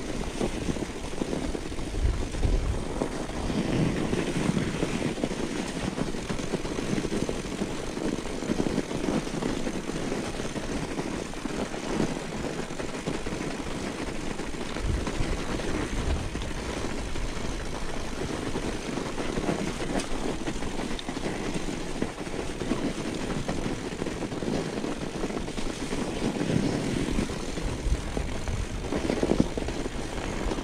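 Continuous rolling rumble of a mountain bike's tyres running downhill over packed snow, with small surges as the bike goes over bumps in the track.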